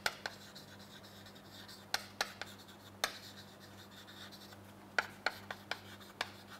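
Chalk writing on a chalkboard: quick sharp taps and short scrapes as letters are formed, coming in bursts, with a pause of about two seconds before a last burst near the end.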